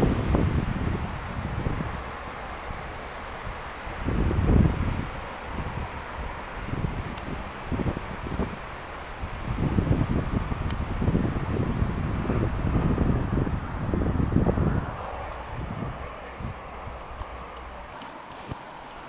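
Wind buffeting the microphone in uneven gusts, easing off near the end.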